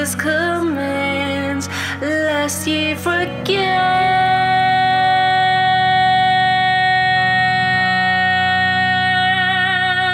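Slow, mournful song: a woman sings a gliding melody over a low sustained accompaniment, then holds one long note for about six seconds, wavering slightly near its end.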